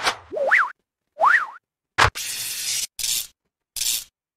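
Cartoon sound effects accompanying an animated logo: two springy boings that wobble up and down in pitch, then a sharp click followed by a stretch of hiss and two shorter bursts of hiss.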